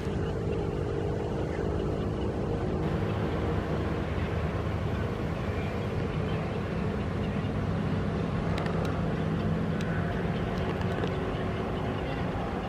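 Steady low motor rumble with a faint hum, and a few faint ticks in the second half.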